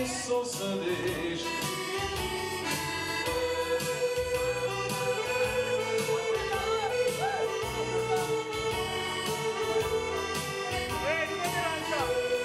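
Live Romanian party-band music: an ornamented, reedy lead melody with keyboard backing over a steady drum beat.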